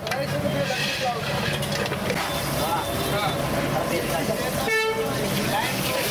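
Busy street background of indistinct voices and traffic, with one short vehicle horn toot near the end.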